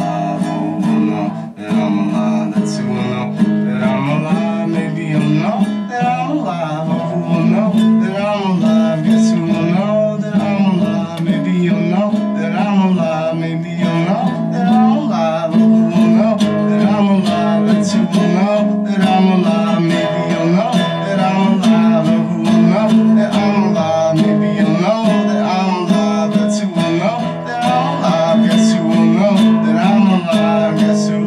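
A man singing to his own nylon-string classical guitar, a solo acoustic song with the guitar played steadily under the voice.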